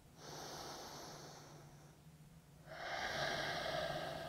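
A man's slow breath in and out through the nose, held in a yoga pose. There is a faint first breath in the first second, then after a pause a louder, longer breath from about three seconds in.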